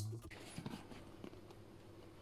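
Faint room tone with a few soft clicks, as a voice trails off at the very start.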